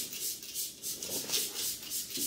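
Hand spray bottle misting water onto a mannequin's hair with quick repeated trigger pulls, a rapid even run of short hissing sprays about five a second, dampening the hair before cutting.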